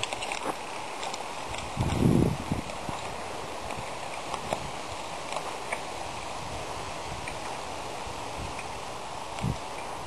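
Xtracycle cargo bicycle with BionX electric assist rolling over a dirt and gravel track, with scattered clicks and rattles. A brief low rumble comes about two seconds in, and a smaller one shortly before the end.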